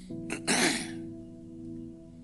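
A man clears his throat once, about half a second in, over soft background music holding a steady chord.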